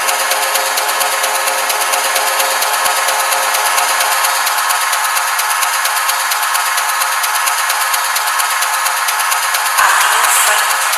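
Techno from a live electronic set with the bass stripped out, leaving a dense, fast, rattling wash of high percussion and noise. It swells briefly near the end.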